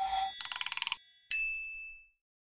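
Intro logo sting sound effects: a held tone running on from a whoosh, then a rapid fluttering run of clicks, and just after a second in a single bright ding that rings and fades out.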